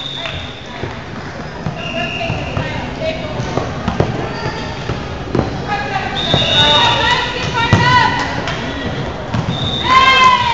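Indoor volleyball rally: the ball is struck and hits the floor in sharp thuds several times, sneakers squeak briefly on the hardwood court, and players call out, echoing in the large gym.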